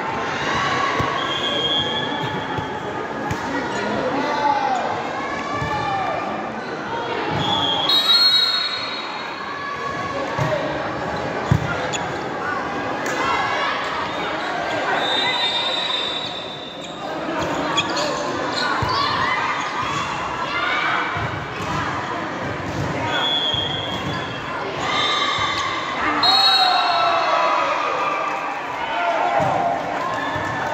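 Indoor volleyball match: the crowd chatters and shouts, echoing in a large sports hall, under the sharp hits of the ball and squeaks and thuds of play. Several short, shrill whistle blasts come through at intervals.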